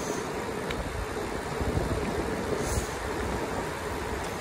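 Wind buffeting the microphone over tyre rumble on rough asphalt as a bicycle descends a mountain road at speed. The noise stays steady, with a faint click about a second in.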